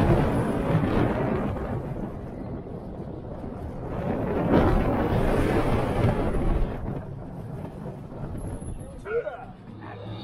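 Wind rushing over the microphone with the rumble of a steel roller coaster train running along its track. The rush is loudest at first and again about four to six seconds in, then dies down as the train slows near the end.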